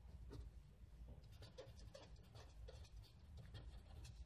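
Faint scratching of a pen writing a word on paper, in short irregular strokes.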